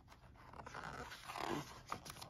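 A page of a hardcover picture book being turned: a soft, swelling sliding-paper rustle, with a small tap near the end as the page settles.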